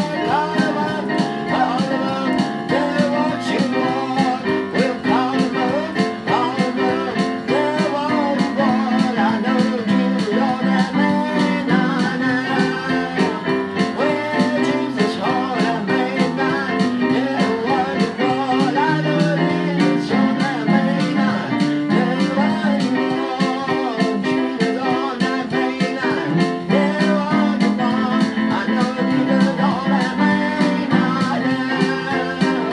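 A man singing with his own electronic keyboard accompaniment, in a steady, continuous performance.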